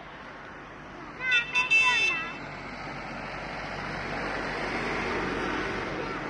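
A horn honks for about a second, a little over a second in, alongside a shout. Then a passing tractor's engine and road noise swell and fade, loudest near the end.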